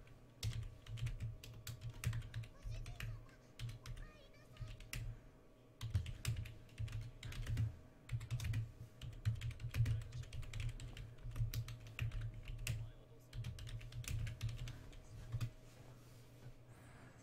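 Typing on a computer keyboard: quick, irregular key clicks, each with a dull thud, coming in runs with brief pauses between them.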